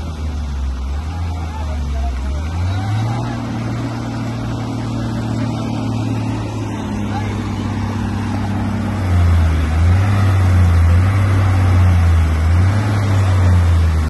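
Diesel engines of pick-and-carry cranes running under load as they hoist a heavy machine. The engine note rises about three seconds in and grows louder about nine seconds in.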